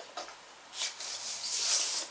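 A vinyl record being slid out of its sleeve: a soft rubbing hiss that begins a little under a second in and grows louder toward the end.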